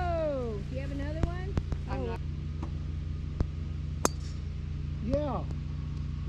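Soft talk among golfers in short snatches, broken by about six sharp clicks between one and four seconds in, over a steady low hum.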